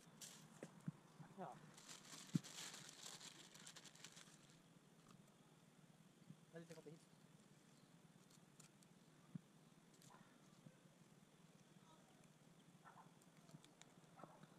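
Near silence with faint water sounds: a person wading in a shallow stream makes soft splashing for a couple of seconds early on. A faint distant voice is heard now and then.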